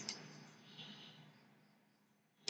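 Near silence: the fading tail of a single click at the very start, then a faint soft hiss about a second in.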